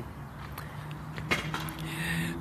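A pause in talk filled by faint background noise with a low, steady hum and a few small clicks.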